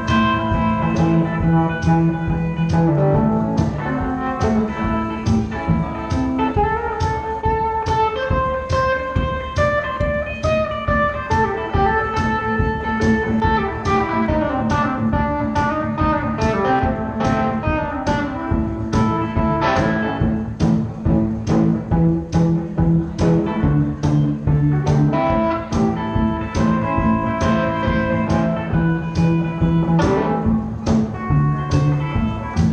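One-man band playing an instrumental on electric guitar, picked melody and chords over a steady drum beat.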